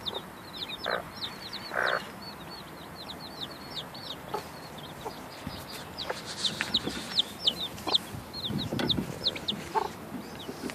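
Day-old chicks peeping nonstop, a rapid run of short, high, falling chirps that grows busier past the middle. Under it come a few low clucks from the brooding mother hen.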